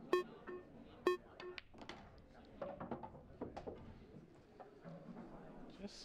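A shot on an English eight-ball pool table: two sharp, ringing clicks about a second apart, the cue striking the cue ball and balls colliding, followed by a few softer ball clicks.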